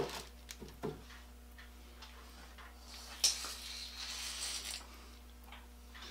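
Light knocks of a steel electrode plate being set down in the bottom of a plastic-lined tank, then a rustle lasting over a second, about three seconds in. A faint steady hum runs underneath.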